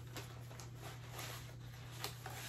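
Faint, light rustles of paper cutouts being handled, over a steady low hum.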